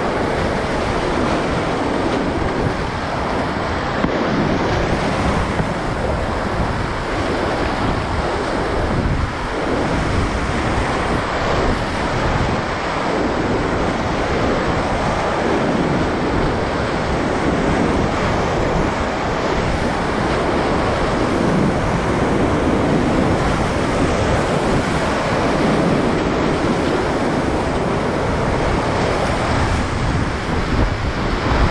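Grade IV whitewater rapids rushing steadily around a kayak, heard through a helmet-mounted GoPro, with uneven low buffeting from water and spray hitting the camera.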